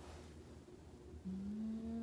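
A single long, steady voiced sound begins just past halfway and holds for over a second, over a low steady hum.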